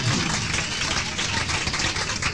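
Audience applauding and cheering, a dense, even patter of many hands clapping.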